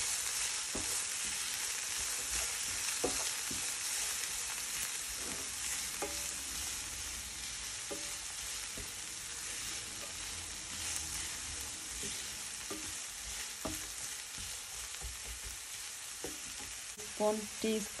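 Chopped onion, bell pepper and spring onion sizzling steadily in oil in a non-stick frying pan while being stirred with a wooden spatula, with a few light taps and scrapes of the spatula on the pan.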